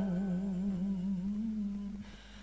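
Vietnamese poetry chanting (ngâm thơ): a single voice holds one long note on the end of a line, wavering slowly in pitch, and fades away near the end.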